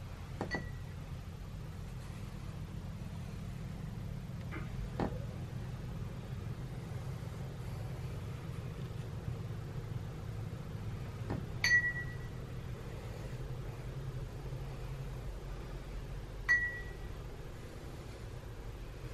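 Low steady room hum, broken by three light clinks that ring briefly, about half a second in, near the middle and a couple of seconds before the end, with a couple of soft knocks in between.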